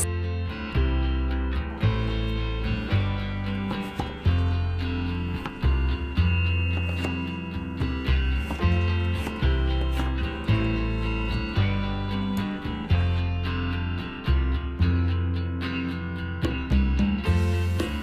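Instrumental background music with guitar over a repeating bass line.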